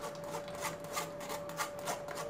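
Blended watermelon pulp being rubbed and pressed through a stainless steel mesh strainer, a scraping rub repeating about three times a second, to strain out the seeds.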